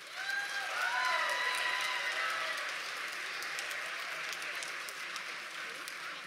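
Audience applause breaking out right as a song ends, with a few voices calling out over the clapping in the first two seconds, then steady clapping.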